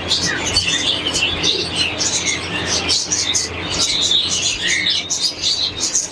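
Many small caged birds chirping at once, a dense and continuous chorus of short high-pitched chirps.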